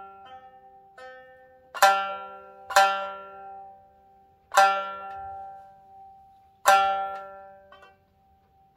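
Nagauta shamisen struck with a bachi plectrum in a slow, sparse instrumental passage: four loud, sharp strikes spaced one to two seconds apart, each note ringing on and fading before the next.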